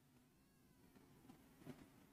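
Near silence: a red marker writing on a whiteboard, with faint squeaks of the felt tip.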